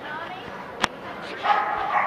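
A dog barking in yips, loudest from about one and a half seconds in, with a single sharp click a little before.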